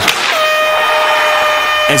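Hockey arena goal horn blowing one long steady note that starts about a third of a second in, just after a short burst of noise, and signals a goal scored.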